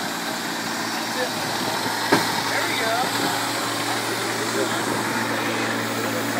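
Steady low bass tone from two Sundown ZV15 15-inch subwoofers playing inside the sealed car during a timed SPL metering run, heard muffled through the closed body. It holds without change, with one small tick about two seconds in.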